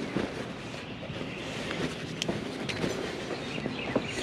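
Clothes being handled and rummaged through: a steady rustling and shuffling of denim and other garments, with small scattered clicks such as metal buttons and buckles knocking.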